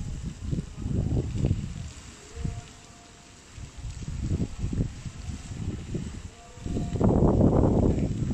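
Wind buffeting the microphone in irregular low gusts, strongest near the end.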